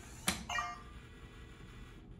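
August smart lock on a sliding patio door locking from its phone app: a sharp click about a third of a second in, then a brief ringing chime that fades quickly.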